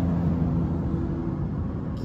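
Low, steady rumble of a motor vehicle engine running, with a hum that fades out after about a second and a half.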